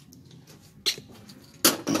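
Faint handling noise, a small click just under a second in, then a sharp metallic clack near the end as a round metal disc is picked up from a stainless-steel bench.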